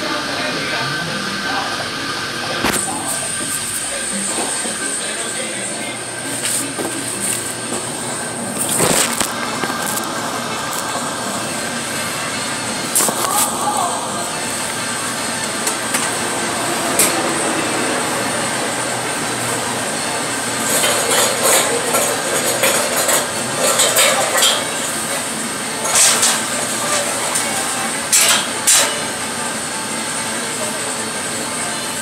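Steady loud whoosh of a commercial rack oven and its exhaust hood running. Metal clanks and rattles come through it as a wheeled sheet-pan rack is handled and the oven's steel door is worked, most of them in the last third.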